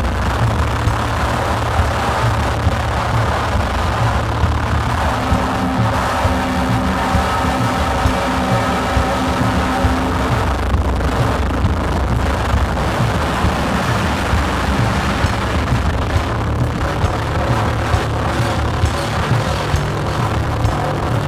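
Live drum kit played over a loud, dense low electronic drone from synthesizers, with frequent drum hits. Steady held tones enter about five seconds in and fade out around ten seconds.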